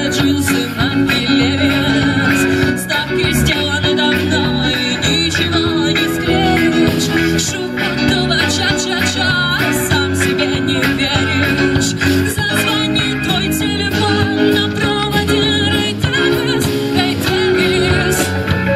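A live rock band playing: electric guitar, bass guitar and drum kit with keyboard, and a woman singing, amplified through speakers.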